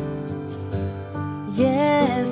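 A Christian worship song playing: sustained instrumental chords with a light tick about twice a second. A singing voice comes in with a rising, sliding note about three-quarters of the way through.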